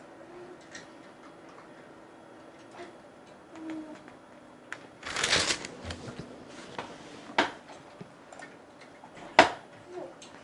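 Bible pages being turned by hand: a longer rustle of paper about halfway through, then two sharp snaps of pages, the second the loudest, with light ticks of paper in between.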